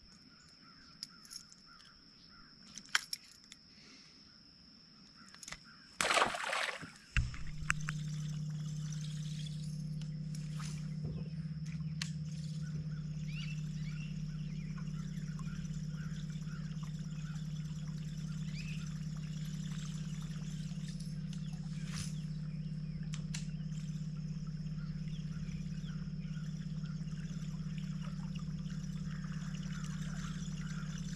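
A brief loud noise about six seconds in, then a small electric motor on the bass boat starts and runs with a steady low hum over a continuous water sound.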